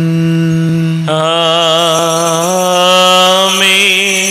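Slow liturgical singing: a voice holds long notes with a wavering vibrato over a steady sustained accompanying note. The accompanying note steps up in pitch about halfway through.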